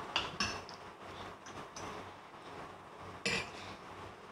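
Glass bowl and serving spoon being handled on a wooden cutting board: a few light clinks near the start and one sharper knock a little after three seconds in.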